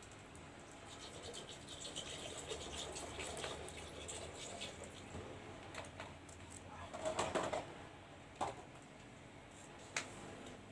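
Quiet handling of plastic soft-drink bottles and a large plastic jar: soft rustling and small clicks, with a louder rustle about seven seconds in and a sharp tick near the end.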